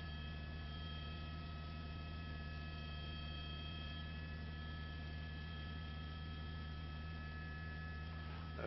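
A steady low hum with a few faint, steady high whining tones above it and no other events. It is a constant background drone on the broadcast audio.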